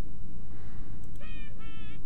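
Two short wavering electronic tones, one after the other, starting just past a second in: a slide-animation sound effect. A steady low hum underneath.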